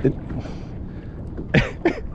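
A man's voice: a clipped word, then two short, breathy vocal bursts about one and a half seconds in, over low background noise.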